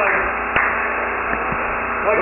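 Room noise of a lecture audience: a steady hiss with faint voices, and one sharp knock about half a second in.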